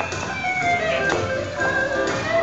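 Music playing, a melody of held notes changing every half second or so.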